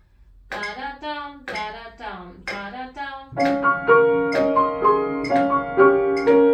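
A woman's voice sounding evenly spaced syllables, about two a second, for the first three seconds. Then, about halfway through, a grand piano starts playing, louder than the voice: a line of single notes over held lower notes.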